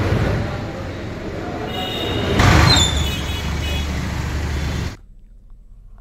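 Road traffic noise with a low rumble. A vehicle passes louder in the middle with a brief high-pitched tone, and the sound drops off sharply about five seconds in.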